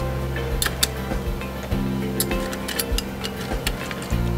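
Background music with a steady bass line, over which ice cubes clink against a tall glass as they are dropped in with metal tongs: several sharp, separate clicks.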